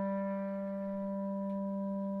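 Solo clarinet holding one long, steady low note that fades slightly.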